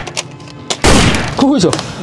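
A single loud shot-like bang about a second in as a toy dart blaster is fired, dying away within half a second, followed by a short vocal exclamation.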